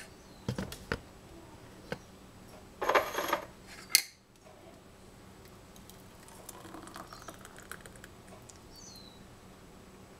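A metal spoon and stainless saucepan clinking and scraping: a couple of knocks in the first second, a rattle about three seconds in and one sharp clink at about four seconds, the loudest. After that only faint scraping as thick fruit sauce is spooned from the pan into a glass jar.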